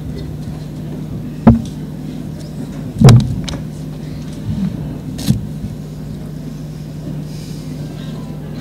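Steady low electrical hum from the stage sound system, broken by a few dull thumps; the loudest comes about three seconds in.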